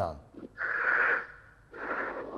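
A person breathing out audibly, twice: a breathy hiss lasting nearly a second, about half a second in, and another starting near the end.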